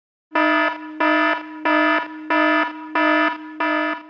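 An electronic alarm-like buzzing tone pulsing six times, about one and a half pulses a second.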